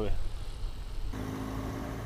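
Low wind rumble on the microphone, then about a second in a sudden switch to the steady hum of a BMW R1200GS Adventure's boxer-twin engine running as the motorcycle rides along.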